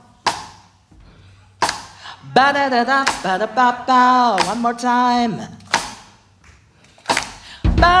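A woman singing a phrase of held notes into a microphone, with a slide in pitch near the middle, between a few sharp percussive hits. The band comes back in with heavy low notes near the end.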